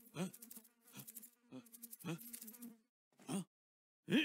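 A housefly buzzing in a steady drone, as a cartoon sound effect, stopping a little under three seconds in. Over it a man's puzzled "Huh?" and a few short grunts.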